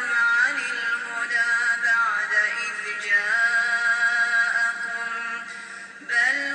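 A man reciting the Quran in melodic tajweed style, drawing out long held notes that bend in pitch, with the phrase trailing off just before the end.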